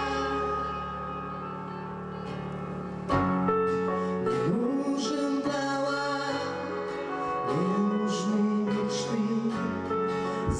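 Live band playing a song with acoustic guitar, electric guitar and keyboard. A held chord dies down, then about three seconds in the full band comes back in louder, with a sliding melody line over it.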